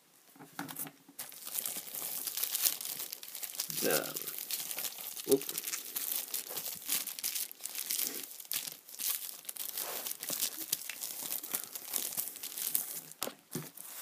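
Crinkly plastic toy packaging being handled and pulled open, a dense run of crackles for most of the stretch.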